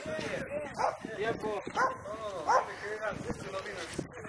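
Small dog barking and yipping repeatedly, short rising-and-falling yelps about twice a second.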